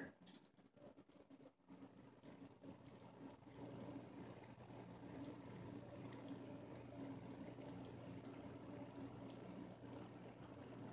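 Near silence with a dozen or so faint, scattered computer-mouse clicks, and a faint low hum that comes in about three seconds in.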